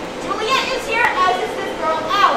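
Children's voices speaking and calling out, with no clear words, and a single sharp click about halfway through.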